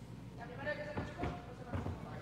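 A child's hands and feet thudding on a carpeted gymnastics floor during tumbling, a few short soft thuds starting about a second in, with children's voices in the background.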